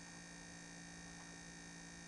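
Near silence: faint steady electrical hum with light hiss, the room tone of the recording.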